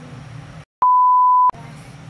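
A single steady, high-pitched censor bleep, about three quarters of a second long, dropped in over muted audio to hide a spoken answer.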